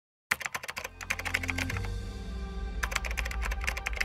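Rapid keyboard-typing clicks, a typing sound effect for text being typed onto the screen, over background music with low sustained notes. The clicks start a moment in, thin out midway and come thick again near the end.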